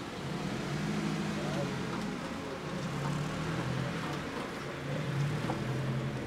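Street ambience: steady traffic noise with a low engine hum that swells and fades, and indistinct voices in the background.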